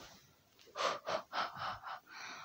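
A person's voice making a quick series of about five short, breathy gasps, roughly four a second, starting just under a second in.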